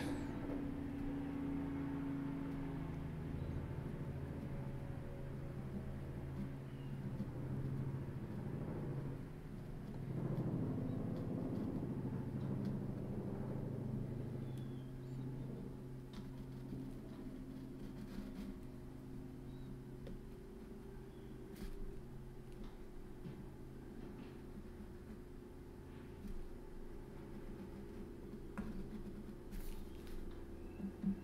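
A helicopter passing outside: a low, steady drone with a few held tones, louder for the first half and fading away over the second.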